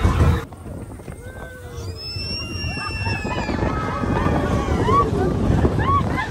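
Riders on a Slinky Dog Dash roller coaster train whooping and shouting as it picks up speed, with wind rushing over the microphone. A low rumble cuts off suddenly about half a second in, and the whoops come several times in the second half.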